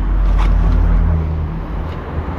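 Low, steady rumble of a car idling at the kerb, with a couple of light knocks as bags are loaded into its open trunk.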